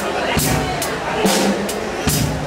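Acoustic drum kit played with sticks in a simple steady beat: the bass drum alternates with snare and cymbal hits, about two to three strokes a second.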